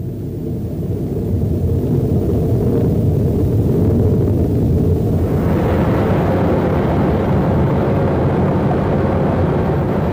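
Crawler bulldozer's diesel engine running steadily under load while clearing overburden in an open-pit mine. The sound swells over the first few seconds and grows fuller and brighter from about halfway through.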